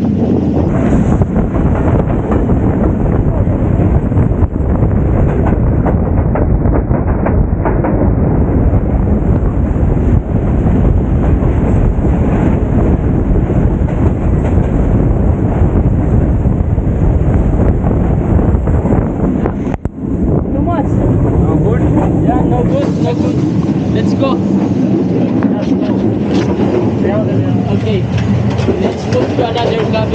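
Loud, steady rumble and rush of a moving train heard from an open carriage door, with a freight train of tank wagons passing on the next track and wind on the microphone. Voices can be heard over it.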